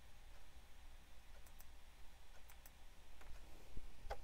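Faint computer mouse clicks: a few light, sharp clicks, mostly in close pairs, starting about one and a half seconds in.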